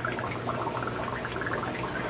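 Aquarium water running and bubbling from the tank filtration, over a steady low hum.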